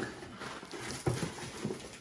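Faint handling noise of snack packaging and a cardboard box being rummaged through, with a couple of soft knocks about a second in.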